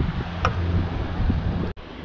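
Low wind rumble and hiss on the camera microphone, with one sharp click about half a second in.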